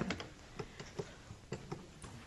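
Faint, scattered clicks of desk buttons being pressed as trustees cast their votes on an electronic voting system, about a handful in two seconds.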